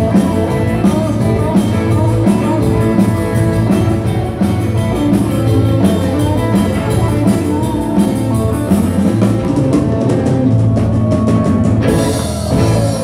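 Live rock-and-roll band playing: guitars over a drum kit keeping a steady dance beat.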